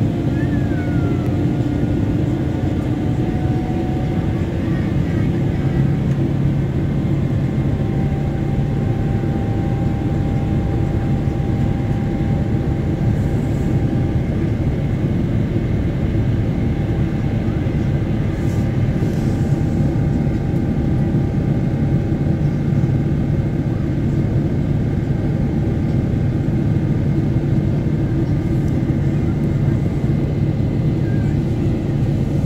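Steady in-flight cabin noise of a Boeing 777-300ER heard from a window seat: its GE90-115B turbofan engines and the airflow make a loud, even, low-pitched roar, with a few faint steady tones above it.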